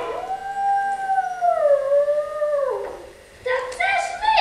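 A single long wolf-like howl, held for over two seconds, wavering and then sliding down in pitch before it breaks off.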